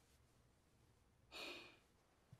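Near silence, broken about one and a half seconds in by a single short breath out, like a sigh.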